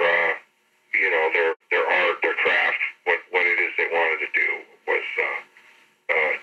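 Speech only: a man talking in an interview.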